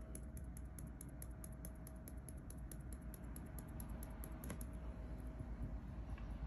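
Coarse holographic glitter shaken out of a small plastic jar and pattering onto an adhesive-coated wooden board: a faint, fast run of light ticks, about six a second, with one slightly heavier tick near the end, stopping about five seconds in.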